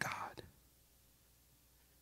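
A man's voice finishing a single soft, breathy spoken word in the first half-second, then near silence: room tone.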